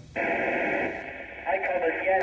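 Amateur FM radio receiver opening with a sudden steady hiss of static as the downlink from the International Space Station comes in, then the astronaut's voice starting through it, thin and band-limited, about one and a half seconds in.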